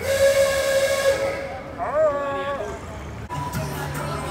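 Vintage car horn sounding twice: a long steady blast, then a shorter one whose pitch rises, holds and falls, like an 'ah-ooga'.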